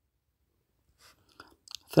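Quiet room tone for about a second, then a few faint short clicks, and a voice starting a spoken word right at the end.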